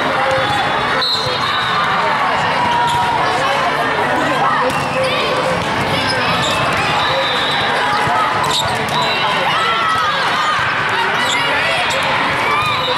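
Volleyballs being hit and bouncing in a large, echoing sports hall full of courts, over a steady din of many overlapping voices; two sharp ball strikes stand out, about a second in and near the middle of the second half.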